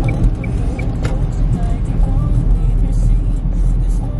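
Steady low rumble of a car's engine and tyres heard from inside the cabin while driving through town. A faint row of quick high pips, about three a second, sounds in the first second.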